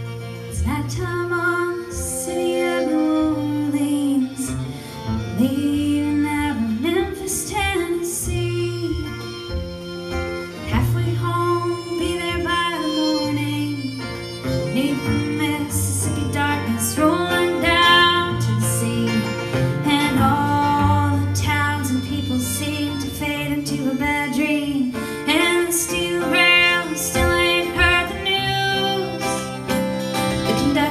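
Live acoustic band music, a country-folk song on acoustic guitar and fiddle, with a woman singing.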